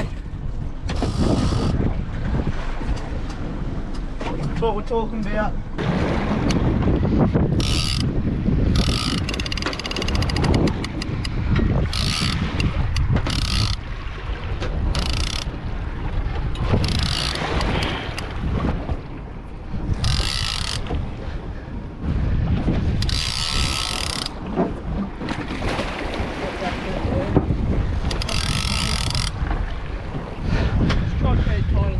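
Fishing reel working a hooked tuna, in about a dozen short spells of high-pitched reel noise, each up to a second or so long. Steady wind and sea noise runs underneath.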